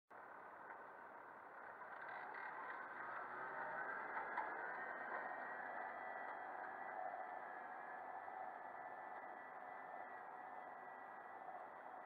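New Holland TS115 tractor's turbo diesel engine working under load as it pulls a plough through the field, heard muffled. It grows louder over the first few seconds, then fades slowly as the tractor moves away.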